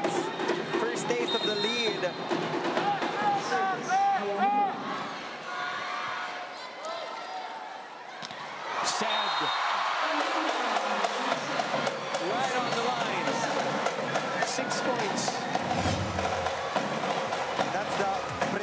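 Indoor arena crowd cheering and shouting, with many voices over one another, sharp claps and music. The noise dips for a few seconds and swells again about halfway through.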